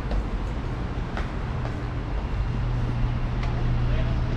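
Street traffic: a motor vehicle's engine hum, steady and growing a little louder, over general road noise.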